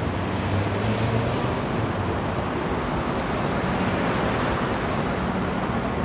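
Steady road traffic noise, with a low vehicle engine drone a little louder about a second in.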